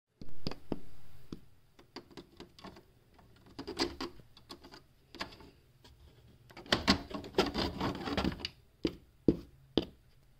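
Small plastic Schleich rider figure tapped and clattered along a plastic toy stable floor by hand: quick irregular clicks, a denser run of tapping about seven to eight seconds in, then a few single sharp clicks.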